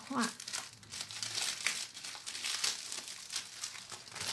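Clear plastic packaging bag crinkling and rustling in irregular crackles as it is handled and a card sheet is slid out of it.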